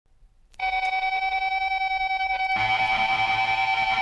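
Opening of a metallic psychobilly track: about half a second in, a sustained high tone enters and pulses rapidly, about eight times a second, and a fuller, lower layer with a wavering pitch joins after about two and a half seconds.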